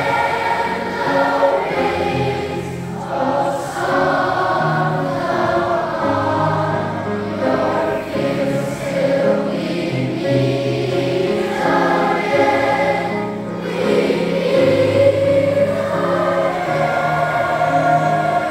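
A large massed school choir of children singing a song in unison, with sustained low accompanying notes beneath the voices.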